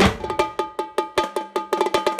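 Marching tenor drums (quads) struck in a fast, even run of ringing, pitched hits, about eight a second, opening with one loud accented hit.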